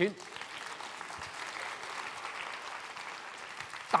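Audience applauding steadily, an even patter of many hands clapping.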